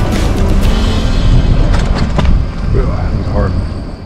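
Wind buffeting the camera microphone, with a low rumble, while riding a bicycle; it fades out over the last second or so.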